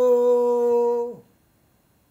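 A man's voice holding one long sung note that sags slightly in pitch and then drops away sharply a little over a second in.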